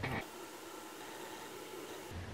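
Faint, steady hiss of room tone, with no distinct event.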